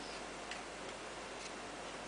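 Steady low hiss with two faint clicks about a second apart.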